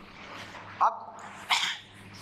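A whiteboard being wiped with a duster, a steady rubbing. Two brief, much louder sounds cut through it, the first a little under a second in and the second about two-thirds of a second later.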